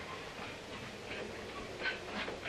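Steady running noise of a moving train heard inside a mail car, with a few light clicks and a sharper one near the end.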